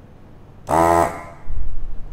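Vacuum-suction desoldering gun's built-in pump switched on by the trigger: a loud buzzing hum that starts abruptly, runs for about half a second and drops in pitch as it winds down, sucking the melted solder off the joint. A low thud follows about a second later.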